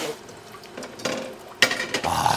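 Wet cooked pumpkin leaves being tossed and handled in a plastic colander at the kitchen sink, with soft wet rustling and one sharp knock of the colander about one and a half seconds in.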